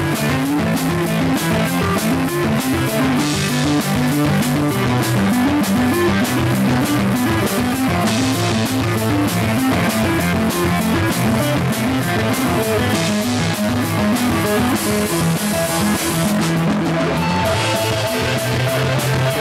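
Rock band playing live: a repeating electric guitar riff over a drum kit with steady cymbal strikes.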